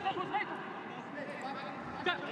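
Quiet background of a televised football match: a steady low hiss with a few faint voice sounds in the first half second.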